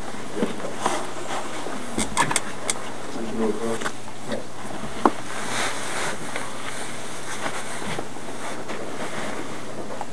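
Room noise under a steady hiss, with a few sharp clicks and knocks about two seconds in, a single louder click about five seconds in, and a brief, faint voice in between.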